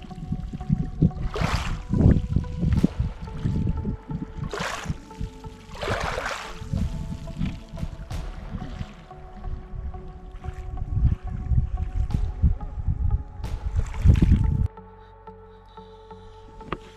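Small lake waves lapping and washing over a pebble shore, in several swells, with a heavy low rumble of wind on the microphone. Soft background music with sustained tones runs underneath. The water and wind cut off suddenly near the end.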